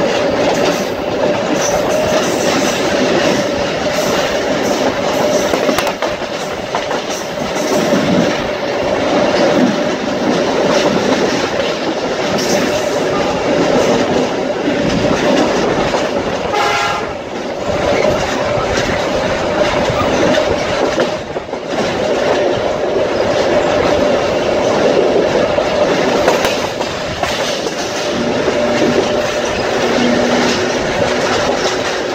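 Electric suburban train running at speed, heard from an open window: steady wind and wheel noise with clicking over rail joints and a steady hum. About halfway through there is a brief horn blast.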